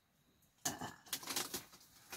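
Clothes rustling and wire hangers clattering lightly as laundry is handled at a bamboo clothes rail, starting about two-thirds of a second in after a quiet moment.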